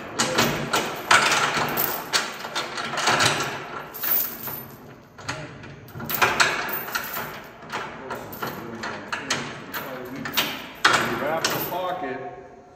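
Steel securement chain rattling and clanking against a flatbed trailer's rail and stake pocket as it is wrapped around the pocket, a long run of irregular metallic clinks and knocks.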